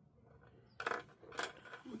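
Two sharp clicks about half a second apart, small hard objects knocking together as the key fob's small circuit board is handled and repositioned on the work mat.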